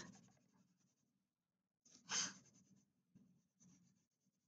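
Near silence with a faint scratch of wax crayon being rubbed across paper, and one short louder rush of noise about halfway through.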